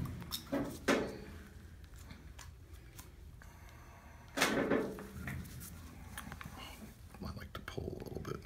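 Light handling noises from a syringe and needle being readied for a knee aspiration: a few small clicks in the first three seconds and one short rustle a little after the middle.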